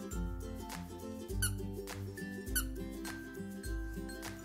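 Background music with a steady beat, over which a squeaky plush carrot toy squeaks twice, about a second and a half in and again a second later, as a dog bites at it.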